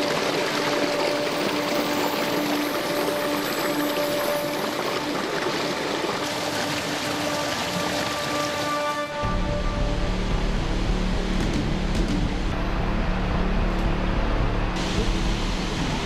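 Water from a falaj irrigation channel pouring and splashing down over rocks, under background music with long held notes. About nine seconds in, a deeper bass part comes in and the water noise drops back.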